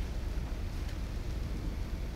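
Low steady hum with faint hiss: room tone in a pause between speech, with no distinct event.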